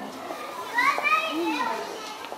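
A small child's high-pitched voice calling out for about a second, its pitch rising and then falling.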